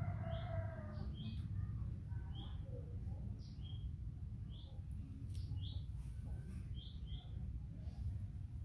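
Small birds chirping in the background: short high chirps every half second or so, over a steady low rumble. A brief soft pitched call sounds in the first second.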